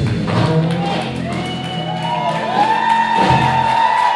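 A live rock band's final chord ringing out on electric guitars and bass at the end of a song, the sustained guitar notes bending slightly. The low bass notes stop just before the end.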